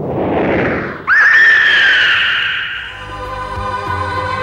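A whoosh sound effect, then about a second in a sudden, loud, long screech of a bird of prey that sinks slightly in pitch and fades out after a couple of seconds, as music comes in.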